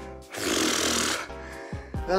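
A man's heavy breath out, one loud exhale of just under a second, from being out of breath after a hard cardio workout. Steady background music plays under it.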